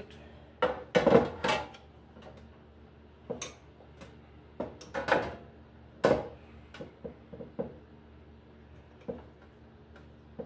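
Light fixture's cover plate and metal housing being handled and set down, giving a string of irregular knocks and rattles, the loudest about a second in.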